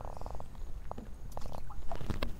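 Light splashing and dripping of water in a plastic tub, a few small clicks and drips, with a short rattling buzz in the first half second.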